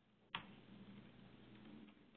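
Near silence, broken by a single sharp click about a third of a second in.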